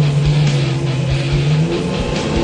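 Off-road Jeep engine running under load on a muddy hill climb, a steady low drone, mixed with background music.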